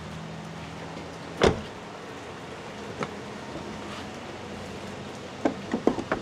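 A single dull thump about a second and a half in, then a lighter click at about three seconds and a few small clicks near the end, as the charging connector is handled at an EV fast-charging post. All of it sits over a steady low hum.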